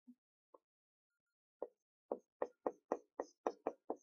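A marker pen tapping and stroking against the board as characters are written: a quick run of light, sharp taps about four a second, starting about a second and a half in.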